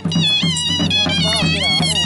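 Live traditional dance music: a nasal reed woodwind plays a wavering, bending melody over a steady dhol drum beat.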